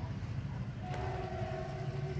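A horn sounds one steady, held note for about a second and a half, starting about a second in, over a low steady rumble.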